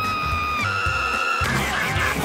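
Cartoon man's high-pitched scream held on one pitch, stepping a little higher partway through and breaking off about three quarters of the way in, over background music.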